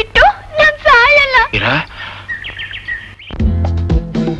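Film soundtrack: a girl's high, wavering voice for about a second and a half, then a short rush of noise and a faint high chirping. Near the end, film music with bass and percussion starts abruptly.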